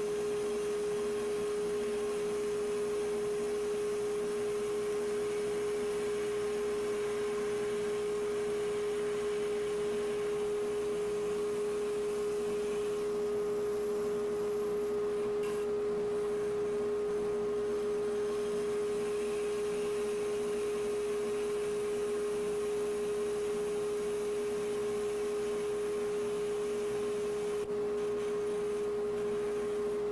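Spindle sander running with a small sanding spindle sanding wood: a steady hum at one unchanging pitch, with a light sanding hiss underneath.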